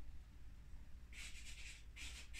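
A dry drawing medium rubbed across paper: a short run of quick scratchy strokes starts about halfway through and lasts under a second.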